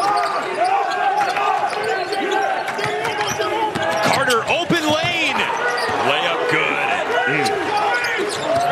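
Basketball being dribbled on a hardwood court, a run of repeated bounces, with voices in the arena behind it.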